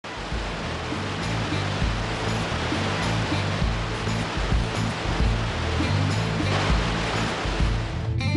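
Muddy floodwater pouring over a stone weir, a steady, dense rush of water. Music with low bass notes plays under it.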